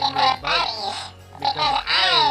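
A squeaky, high-pitched novelty character voice babbling unintelligibly in two sing-song phrases, with a short pause about a second in.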